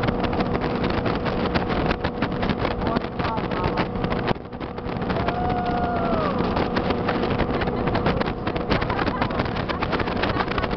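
A 1985 Formula speedboat's engine running steadily at speed, with wind buffeting the microphone. About five seconds in, a higher whine holds for about a second and then drops away.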